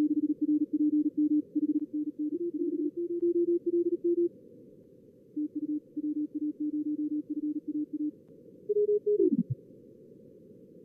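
Simulated fast Morse code (CW) signals from a contest practice simulator, heard over band-limited receiver hiss. Keyed tones at two slightly different pitches follow one another with a short pause in the middle. Near the end a tone slides sharply down in pitch and stops.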